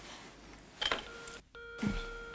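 Bakelite desk telephone handset lifted with a click, then a steady dial tone from the receiver that drops out for a moment about halfway through. There is a short low thud just before the end.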